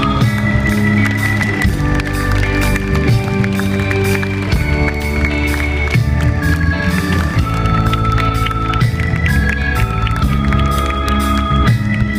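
Live rock band playing an instrumental passage with no singing: a melody of long held notes over electric guitar and a steady drum beat.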